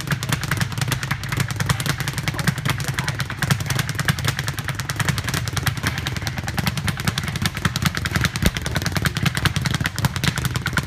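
A Title Boxing speed bag on a Balazs platform with a ball-hook swivel, punched in a fast, unbroken rhythm. It makes a steady, rapid rattle of strikes and rebounds.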